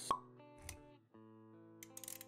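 Intro music with steady sustained notes, with a sharp pop sound effect just as it begins and a short low thump a little later.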